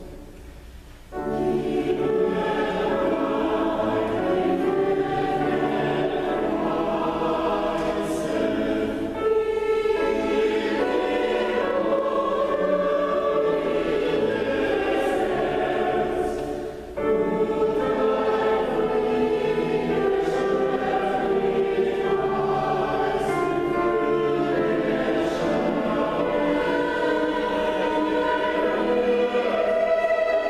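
Mixed choir of men's and women's voices singing a sustained classical choral piece. The singing pauses briefly about a second in and dips again for a moment about halfway through.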